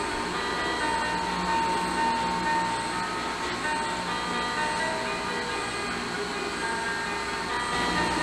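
Steady background din: a constant low hum with faint, scattered short tones over it and no distinct event.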